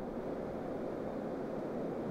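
Steady background room noise: an even hiss with a low rumble, with no distinct events.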